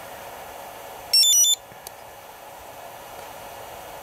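HTRC C240 Duo battery charger beeping: a quick run of high tones that step in pitch, lasting about half a second, a little over a second in. It marks the charger starting a new job and asking to confirm the 4S cell count. A faint steady hiss runs underneath.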